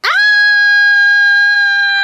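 A long, high-pitched scream that swoops up at the start, then holds one pitch for about two seconds.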